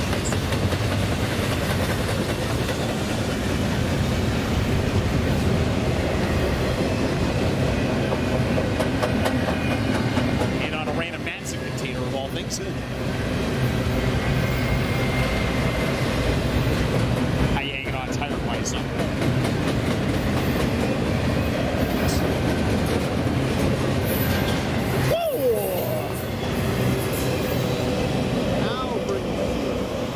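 Double-stack intermodal container train rolling past, its well cars making a steady wheel-and-rail noise with a few brief dips.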